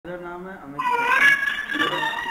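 An animal's calls: a lower call first, then, from about a second in, a louder long, high, wavering call that carries on.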